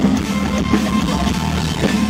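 Live rock band playing loudly: electric guitars, bass guitar and drum kit, with no singing.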